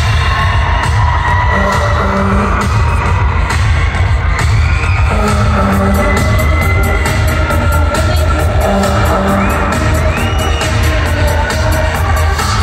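Loud live pop music through an arena sound system, recorded from the audience: a driving, evenly spaced drum beat under held synth and instrumental tones, without singing. The crowd whoops here and there.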